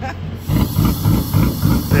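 A race car engine starts about half a second in and runs at a loud, uneven, pulsing idle with a hiss over it.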